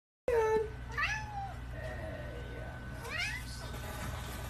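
Domestic cat meowing several times, short calls that rise and fall in pitch.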